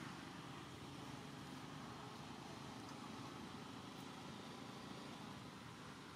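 Faint, steady outdoor background noise, an even hiss and low rumble with no distinct calls or knocks.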